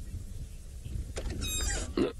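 Low, steady rumble of an idling safari game-drive vehicle engine. About a second in, a louder burst of voice-like sound cuts in and grows toward the end.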